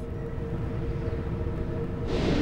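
A low, steady rumble with a faint held tone above it.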